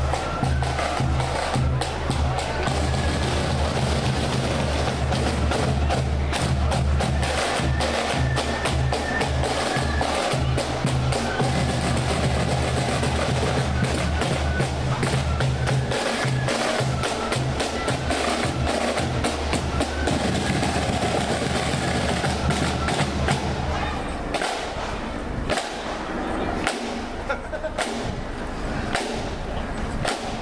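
Marching-band snare drums beating and rolling in a dense rattle, with a steady low hum underneath that fades away about twenty seconds in.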